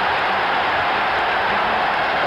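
Hockey arena crowd in a steady, loud roar of cheering and shouting, reacting to a fight on the ice.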